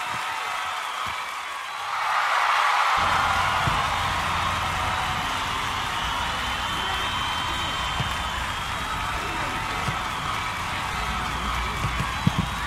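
A crowd's steady din of voices and cheering, growing louder about two seconds in, with music.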